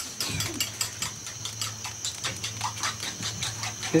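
Dry ears of blue corn handled and rubbed together in the hands, giving a dense, irregular run of sharp clicks and rattles.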